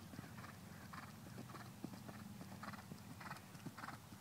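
Faint hoofbeats of a ridden horse cantering over grass and dirt, a fairly regular run of soft thuds that grows a little louder towards the end.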